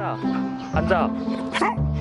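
A golden retriever giving several short barks and whines over background music with steady, held bass notes.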